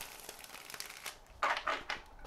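A deck of tarot cards being shuffled by hand: a soft rustle of cards, then a short burst of cards sliding and clattering together about one and a half seconds in.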